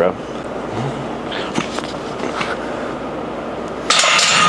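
Steady background noise of a gym, an even hiss with faint voices and a couple of light knocks.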